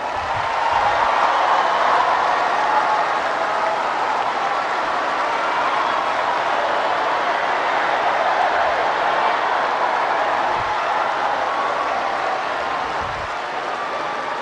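Large crowd applauding, a steady wash of clapping that swells in the first second and eases slightly near the end.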